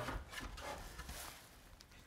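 Faint handling noise: light rustles and small knocks as a wooden board is lifted and pressed into place against a ceiling beam.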